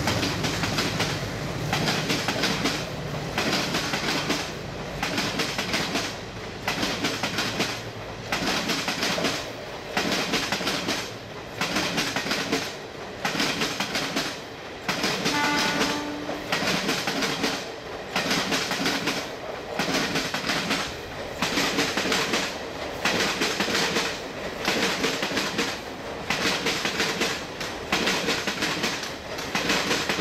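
Passenger coaches of a long train rolling past at moderate speed, their wheels clattering over the rail joints in a regular beat about every second and a half as each coach goes by. A diesel locomotive's low engine rumble fades out in the first couple of seconds, and a short horn note sounds about halfway through.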